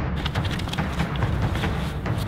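A deep, continuous low rumble with many short, sharp ticks and hits over it: dramatic film-soundtrack sound design, between passages of drum-led score.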